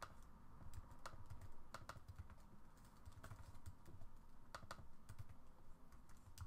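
Faint, irregular keystrokes on a computer keyboard as a short line of code is typed.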